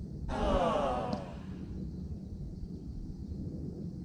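A golfer's voice: one long, breathy exclamation falling in pitch for about a second and a half, right after a putt is struck, heard over a steady low outdoor background.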